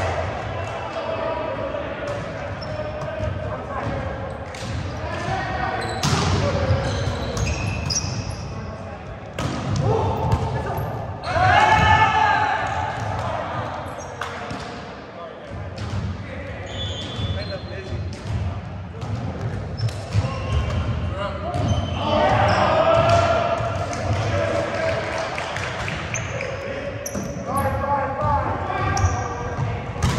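Indoor volleyball play in a large echoing gym: the ball is struck and bounces off the hardwood floor repeatedly. Players call out and shout, loudest at about 12 seconds in and again around 23 seconds.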